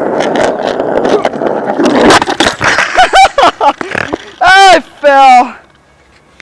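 Skateboard wheels rolling loudly over rough, cracked asphalt for about two seconds, followed by a few sharp knocks. Then a person gives two loud, drawn-out cries near the end.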